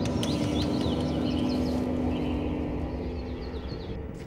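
Background music holding a sustained low chord, with birds chirping high above it and easing off slightly toward the end.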